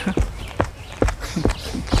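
A man shifting and moving on his feet: a handful of soft, irregular knocks and thumps, about five in two seconds.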